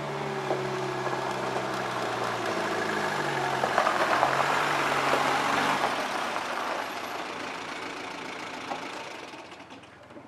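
A Toyota Land Cruiser police jeep's engine running as it drives up, growing louder to about four or five seconds in and then fading away.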